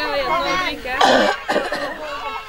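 Voices of people talking nearby, with one loud, harsh cough about a second in.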